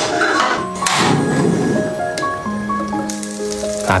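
Background music with steady melodic notes, over hot oil crackling in a stainless steel frying pan during roughly the first second and a half.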